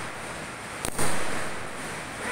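Diwali fireworks: one sharp bang just before a second in that fades away, over the steady hiss of a firework throwing a column of sparks.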